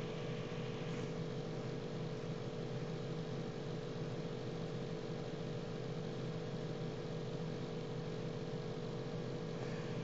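Steady background hiss with a low, even hum and no distinct events: the room tone of a desk microphone.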